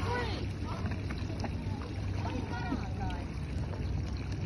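Wind rumbling on the microphone over open water, a steady low buffeting, with faint voices murmuring now and then.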